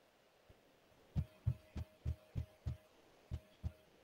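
A series of about eight faint, dull clicks, roughly three a second, starting about a second in with a short pause before the last two. They come from the computer's input while a document is scrolled page by page.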